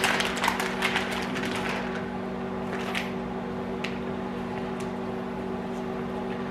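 Thin plastic grocery bag crinkling and rustling during the first two seconds as a whole cooked chicken is pulled out of it, then a few small crackles. A steady hum from a running microwave oven sounds under it all.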